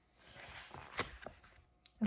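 Soft paper and cover rustling as a large art book is closed and set down, with one sharp tap about a second in.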